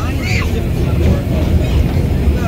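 Vintage New York City subway train running through a station, heard from inside the car: a loud, steady low rumble of the wheels on the track.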